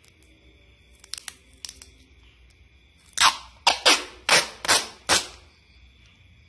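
Parcel packing: a few light clicks, then six sharp rasping snaps in quick succession over about two seconds.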